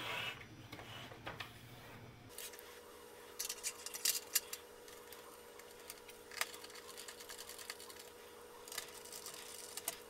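Hands handling the plastic and metal chassis of a CD changer and fitting its flat ribbon cable: scattered light clicks and rustles, in small clusters about a third and again about three quarters of the way through, over a faint steady hum.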